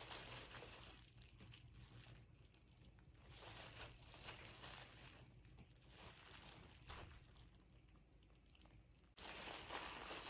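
Near silence with faint rustling and crinkling of plastic gloves and fabric as dye is squeezed from a plastic squeeze bottle onto a rubber-banded shirt, a little louder about nine seconds in.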